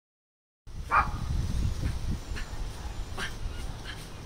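A dog barking several short times, the first bark, about a second in, the loudest, over a steady low rumble.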